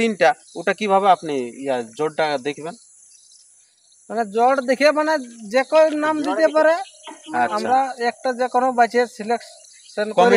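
A man talking, with a pause about three seconds in, over a steady high-pitched insect chorus.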